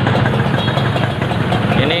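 Two single-cylinder two-stroke motorcycle engines, a Kawasaki Ninja 150 R and a Yamaha RX-King, idling steadily together.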